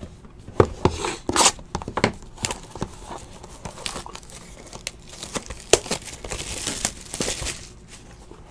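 Handling noise from a trading-card break: sharp plastic clicks and knocks as encased cards are set down, then crinkling and tearing as a sealed card box's wrapper is pulled open, loudest near the end.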